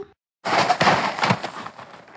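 Sound effect of snow being poured out of a sack: a rushing, crackling noise that starts abruptly about half a second in and fades away over about two seconds.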